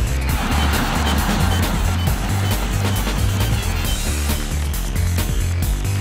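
Electronic theme music for a TV sports show, with a steady beat and a pulsing bass line. A whooshing sweep swells in about half a second in and fades over the next two seconds.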